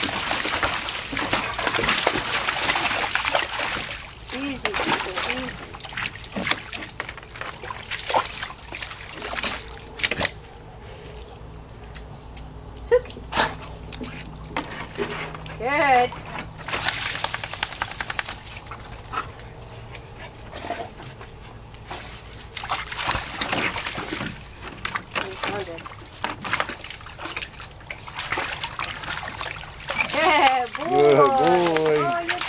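Dogs splashing and wading in a plastic kiddie pool full of water. The water sloshes and splashes on and off, loudest in the first few seconds and again a little past halfway. A short wavering voice-like sound comes just before that second stretch.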